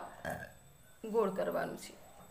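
Speech only: a short, rough, low vocal sound at the start, then a brief spoken utterance about a second in.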